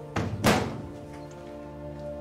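A door shutting with a thunk about half a second in, just after a lighter knock, over soft background music with held tones.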